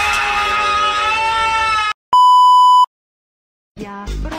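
A voice screaming "Ahhh" on one long, held, slightly rising note for about two seconds, cut off abruptly. Then comes a loud, steady electronic beep lasting under a second, a pause of silence, and music starting just before the end.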